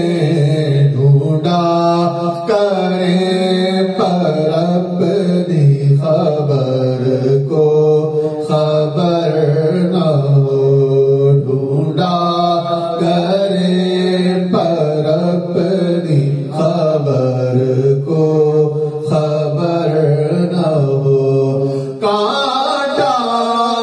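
Male voice chanting Sufi devotional verses into a microphone in a slow melody with long held notes, with other men's voices joining in the chant.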